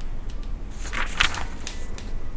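Wood fire burning in a stove, crackling with scattered sharp snaps over a low steady rumble, with a brief rustling swish about a second in.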